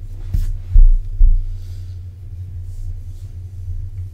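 Steady low electrical hum with three heavy low thumps in the first second and a half, about half a second apart.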